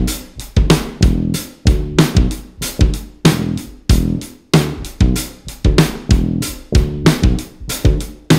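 Instrumental band music: guitar and bass over drums, with a steady beat of strong hits a little under two a second.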